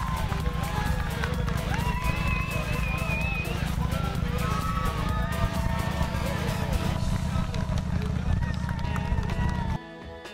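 Spectators shouting and cheering from the roadside as race runners go past, over a heavy, steady low rumble. Near the end the rumble cuts off and guitar music takes over.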